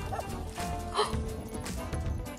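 Background music with steady held tones, and a single short dog bark or yip about a second in.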